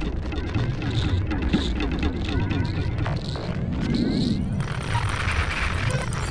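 Improvised electronic noise music: records worked by hand on a turntable make quick gliding pitch sweeps over a dense low rumble from synthesizer and electronics. A lower tone swells up and fades away again about three and a half to four and a half seconds in.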